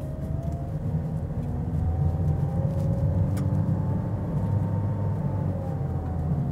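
A car's rolling tyre and engine noise heard from inside the cabin: a steady low rumble, with a faint engine tone that rises early on and eases off near the end.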